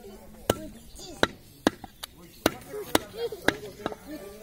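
Butcher's cleaver chopping goat meat on a wooden log chopping block: about eight sharp chops, roughly two a second.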